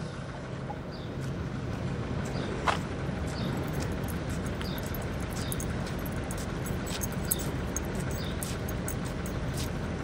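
Outdoor street ambience: a steady low hum of vehicle engines and traffic, with faint, short, high chirps of small birds scattered throughout and one louder chirp just before three seconds in.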